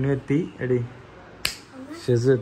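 A few words of speech, then a single sharp finger snap about one and a half seconds in.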